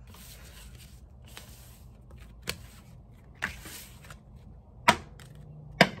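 Tarot cards being handled and shuffled: three short spells of soft papery rustling, with a few sharp taps.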